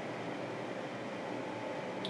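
Steady background hiss of room tone, even throughout, with no distinct events.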